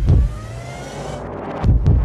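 A deep double thump at the start and again near the end, with a car engine revving up in rising pitch between them.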